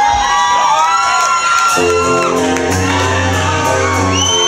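Live rock band sound with crowd whoops and shouts. About two seconds in, the electric guitar and bass come in with sustained, ringing chords.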